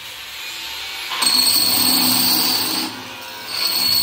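Power drill turning a diamond core bit through a stone countertop: it starts about a second in, grinding with a steady high whine, stops briefly near three seconds, then runs again. The drill is run slow because the bit is almost through the stone.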